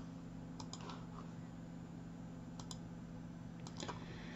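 A few faint, sharp clicks of a computer being operated, two close together under a second in, one near the middle and one near the end, over a steady low hum.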